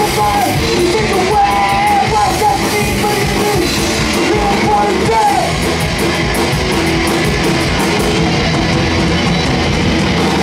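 A rock band playing live at a steady loud level: electric guitars, electric bass and drum kit, with a sung vocal line over them.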